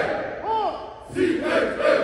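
A group of band members shouting together in unison, two loud yelled calls whose pitch rises and falls, the second about a second and a half in.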